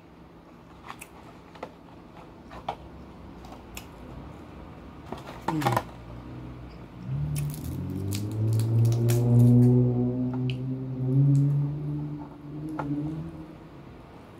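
Snow crab leg shells being cracked and snapped by hand, giving scattered sharp clicks and cracks. From about seven seconds in, a long low hum from the eater with her mouth closed takes over and is the loudest sound.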